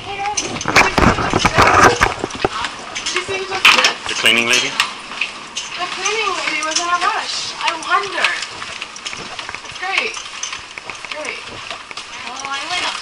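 Knocking and rubbing of a handheld camera against clothing in the first two seconds, followed by indistinct voices of several people talking and calling out, with scattered clatter of handling.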